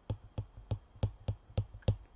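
Stylus tip clicking against a tablet's glass screen while a word is handwritten, about three sharp clicks a second.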